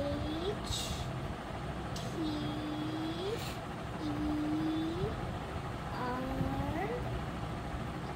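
A person's voice humming four short notes, each about a second long and rising in pitch at the end, over steady background noise.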